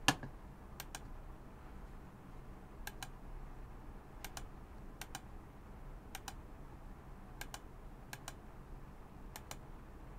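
Faint clicking on a computer while editing: about eight pairs of sharp clicks spread unevenly, the two clicks of each pair a tenth of a second apart.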